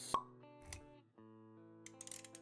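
Quiet intro-animation music with held notes, punctuated by a sharp click-like hit just after the start (the loudest sound) and a softer hit with a low thump a little later.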